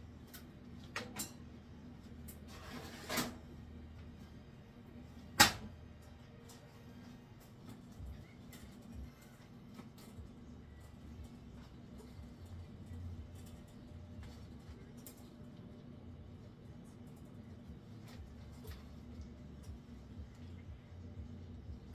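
A tray of beet slices sliding into a food dehydrator, with a short swish, then the dehydrator door shutting with a single sharp click about five seconds in. After that, faint knife cuts on a cutting board over a low steady hum.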